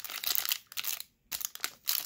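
Plastic wrapping of a pack of card sleeves crinkling as it is handled, with a brief silent gap about halfway through.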